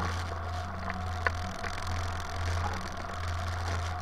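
Wind rushing over a wing-mounted camera on a hang glider in flight: a steady low rumble of airflow, with a single sharp click about a second in.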